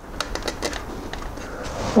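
A quick run of small clicks and crackles in the first second, then a soft rustle: a plastic dashcam being pressed into place on 3M Velcro hook-and-loop tape.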